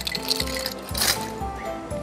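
Background music with sustained notes, over which ice clinks against a glass twice: ice cubes just added to a mixing glass of whiskey.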